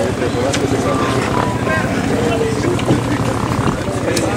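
Enduro motorcycle engines running, a steady low pulsing throughout, with people's voices over them.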